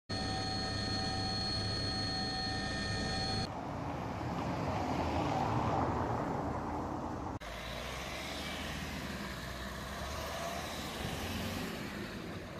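Vehicle noise in three hard-cut segments. First comes a helicopter's steady multi-tone whine for about three and a half seconds, then a stretch of general noise, then from about seven seconds in a car engine's low steady hum.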